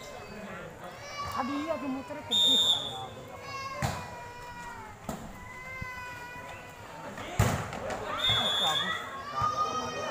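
A volleyball rally on an outdoor court: a short shrill whistle blast, two sharp smacks of hands hitting the ball (the second, in the middle of the rally, the loudest), and a second whistle blast near the end, with players and spectators shouting throughout.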